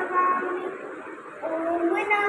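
A girl's voice chanting a Sanskrit mantra in a sing-song recitation, ending on a long held note that rises slightly.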